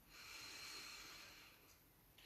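A faint, slow breath through the nose during belly breathing, a soft airy hiss that swells and then fades out about a second and a half in.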